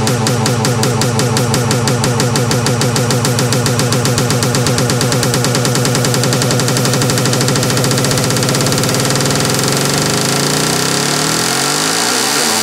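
Melodic progressive psytrance build-up: a fast, evenly pulsing synth pattern without the kick drum's deep bass, with sweeping synth lines over it.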